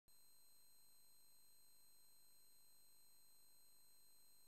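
Near silence, with faint steady hiss and a few thin, steady high-pitched tones.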